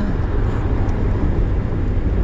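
Steady low rumble of a car on the move, with an even hiss of road noise above it.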